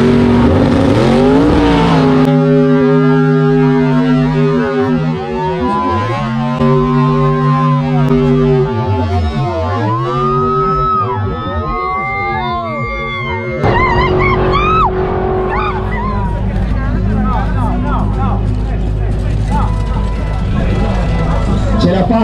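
Drag-racing car engines on a replay of a run: a dense roar at first, then a long stretch of drawn-out low tones that bend up and down in pitch, then a noisy roar again from about halfway through.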